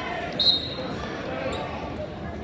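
Referee's whistle, one short blast about half a second in, starting the wrestling bout, over gym crowd chatter.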